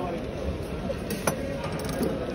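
Steady background noise of a busy fruit market, with two faint clicks a little past the middle.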